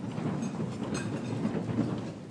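Audience applauding: a steady mass of many separate hand claps.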